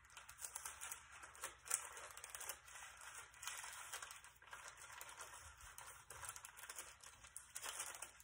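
Thin Bible pages rustling and flicking as they are leafed through one after another, faint and continuous with small sharp flicks, the thin pages tending to stick together.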